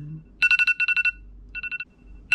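Smartphone alarm beeping in quick groups of four, two groups back to back about half a second in and a third group later on.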